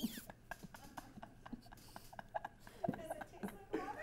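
Faint, irregular clicks and small gurgles of someone sucking hard on a LifeStraw personal water filter, with no liquid drawn through it yet.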